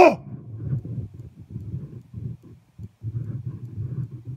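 The end of a man's loud imitation howl, an "ooh" that rises then falls in pitch, called out to draw a reply from animals in the woods; it stops just after the start. Then only low, irregular crackling noise follows, with no answering call.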